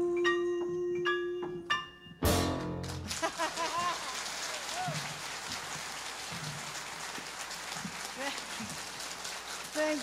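A jazz song ending: a woman's voice holds the last note over the band's sustained chord, then a final loud hit from the band about two seconds in, followed by steady audience applause.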